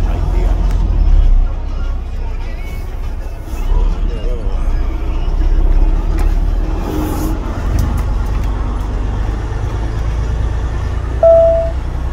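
Helicopter overhead, its rotor and engine noise a loud, steady low rumble. A short, loud, high beep sounds once about eleven seconds in.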